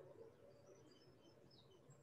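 Near silence: room tone, with a few very faint, brief high chirps scattered through it.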